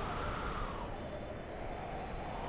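Quiet stretch in the intro of a 1994 Mandopop song: a soft rushing wash that swells and fades while the sustained chords drop out.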